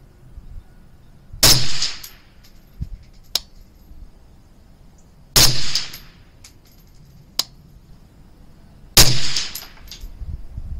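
Three rifle shots about four seconds apart, each a sharp report with a short fading tail, recorded through the digital scope's built-in microphone. Fainter sharp clicks fall between the shots.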